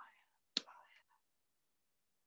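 A woman whispering faintly under her breath in the first second, sounding out the word "fire" to herself, with a small mouth click about half a second in.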